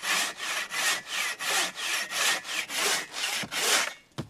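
Hand saw cutting through a birch log set upright in the ground, about three steady back-and-forth strokes a second, cutting the log down to height.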